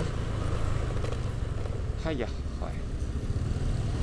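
Steady low wind and road rumble on an action camera's microphone while riding a Honda Vario scooter through traffic, with a short bit of voice about halfway through.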